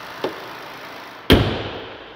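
The hood of a 2024 Jeep Grand Cherokee slams shut once, about a second in: a single sharp bang with a brief ringing decay. Its 3.6-litre Pentastar V6 idles steadily underneath and sounds more muffled after the hood closes.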